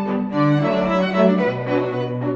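String quartet playing: violins over a lower cello line, bowed notes changing a few times a second.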